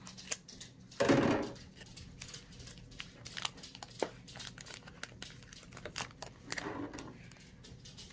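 Scissors snipping open a foil trading-card booster pack, with the wrapper crinkling and tearing. A louder crinkling rustle comes about a second in and again near seven seconds, among light clicks and rustles of the wrapper and cards being handled.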